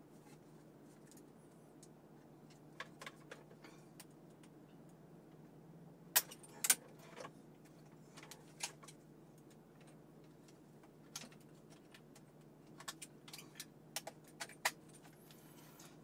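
Scattered plastic clicks and rattles of wiring-harness connectors being unclipped from the back of a car's infotainment screen, the loudest pair about six seconds in, over a faint steady hum.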